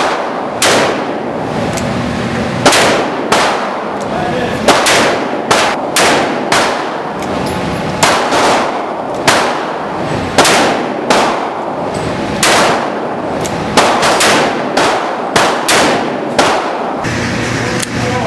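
A rapid, irregular string of handgun shots echoing in an indoor shooting range, more than twenty in all, including a revolver firing; the count is too many for one six-shot revolver, so other lanes are firing too.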